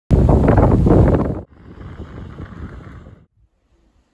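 Wind buffeting the camera microphone: a loud, rumbling gust that drops abruptly about a second and a half in. Weaker wind noise follows and dies away about three seconds in.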